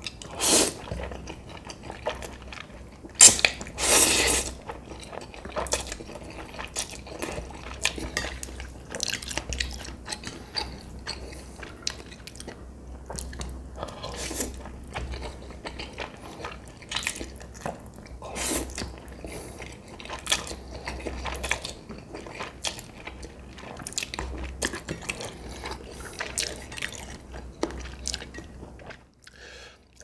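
Close-miked eating sounds: instant noodles slurped in from chopsticks and chewed, with irregular wet mouth noises throughout. The loudest slurps come about half a second in and again around three to four seconds in.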